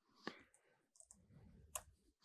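Near silence broken by two short, sharp clicks, one about a quarter second in and one near the end: keystrokes on a laptop keyboard.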